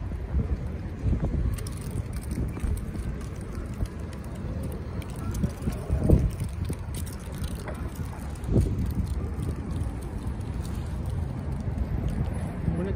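Wind buffeting the phone's microphone as a low, uneven rumble, over the sound of city street traffic, with a couple of louder swells a little past the middle.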